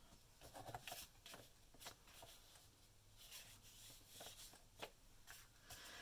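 Near silence with faint, scattered ticks and rustles of paper being handled and slid on a tabletop.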